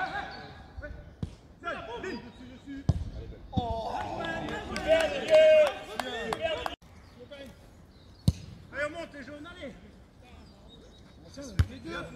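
A football kicked several times on grass, each kick a short thud, amid players' shouts across the pitch. The longest and loudest shouting comes in the middle, then breaks off suddenly.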